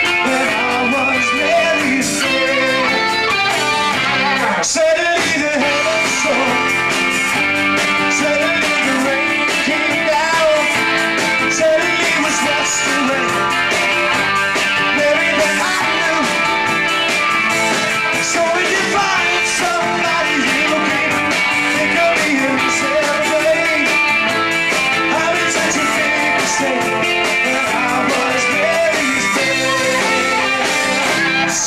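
Live rock band playing a song: electric guitars, bass guitar and drum kit, loud and steady.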